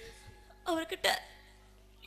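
A woman sobbing through a stage microphone: two short, catching vocal sobs a little past halfway through, then a quiet lull.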